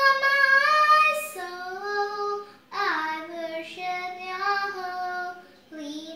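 A young girl singing solo and unaccompanied, holding long notes in phrases that break for a quick breath twice.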